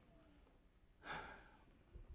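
Near silence, broken about a second in by one short, audible breath from a man close to the microphone.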